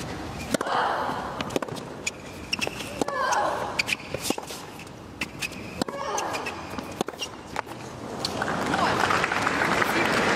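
Tennis rally on a hard court: sharp pops of the racket striking the ball and the ball bouncing, with a player's short grunt on some shots. Crowd applause rises over the last second or so as the point ends.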